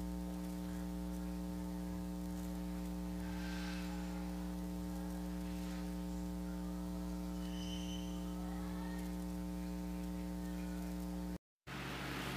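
A steady electrical hum with a stack of even overtones, unchanging in pitch and level, broken by a brief dropout to silence near the end.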